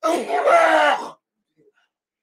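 A man's strained, voiced coughing groan, lasting about a second, from smoke inhaled while smoking cannabis.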